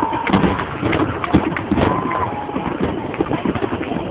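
Fireworks display: a rapid, irregular run of bangs and cracks from many aerial shells bursting in quick succession. Crowd voices are mixed in.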